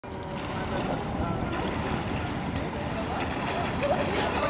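Wind rumbling on the microphone over steady outdoor ambience, with faint voices in the background.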